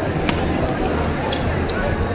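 Busy badminton hall: steady chatter of many people, with one sharp smack of a racket hitting a shuttlecock about a quarter of a second in and a couple of fainter hits later.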